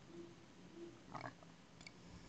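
Near silence: room tone with a few faint, brief sounds and a light click near the end, from hands working on the tray and picking up a flashlight.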